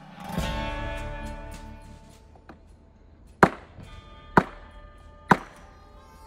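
A strummed guitar chord rings out and fades. Then three sharp chops about a second apart: a Ka-Bar Potbelly 1095 Cro-Van blade striking copper tubing laid on a wooden sawhorse, each chop leaving a brief metallic ring.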